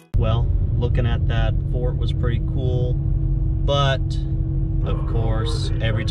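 Car cabin on the move: a steady low road and engine rumble with a constant hum, and a person's voice talking over it. It starts suddenly, just after a cut from guitar music.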